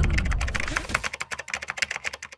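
Rapid ticking clicks, about ten a second, at the tail of an outro jingle, fading out as the low music dies away.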